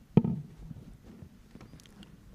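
A single sharp pop or knock about a fifth of a second in, then faint low background noise with a few small clicks.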